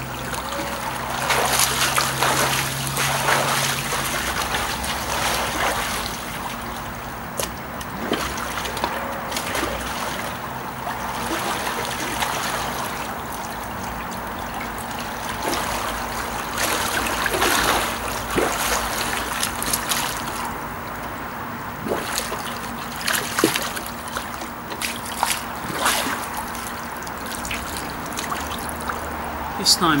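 Water splashing and sloshing in a swimming pool as a person swims through it, in irregular bursts every second or two, with a steady low hum underneath.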